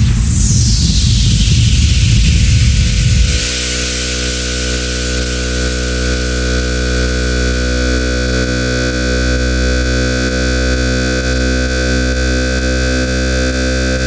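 Beatless breakdown in a minimal techno mix: a falling white-noise sweep over rumbling low noise for the first three seconds or so, then a steady sustained synthesizer drone chord with no drums.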